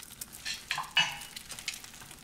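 An egg frying in a stainless-steel pan, with a faint sizzle. A metal spatula scrapes and clinks against the pan several times in quick succession about half a second to a second in.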